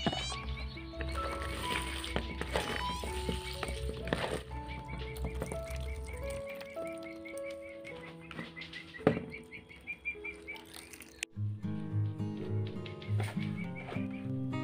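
Instrumental background music with held melody notes over a steady ticking beat of about four a second; the music changes abruptly to a different passage about eleven seconds in.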